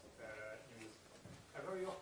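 Faint, distant speech: a person's voice talking from across a lecture room, well away from the microphone.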